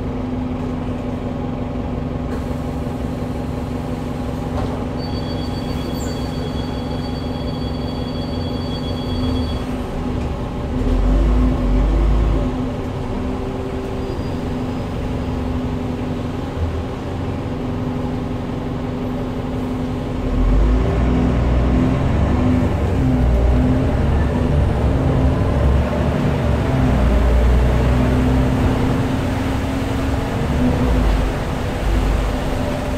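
Cabin sound of a SOR NB12 city bus with an Iveco Tector six-cylinder diesel and ZF automatic gearbox: the engine hums steadily, then runs louder and deeper under acceleration from about twenty seconds in, its pitch rising and falling with the gear changes. A two-tone electronic beep sounds for several seconds early on.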